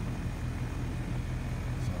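Outdoor air-conditioning condensing unit running, its compressor and condenser fan making a steady low hum. The system is low on refrigerant charge and is being topped up.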